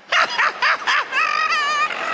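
A man's high-pitched laughter into a handheld microphone: a few quick yelping bursts, then a wavering falsetto cry held for most of a second.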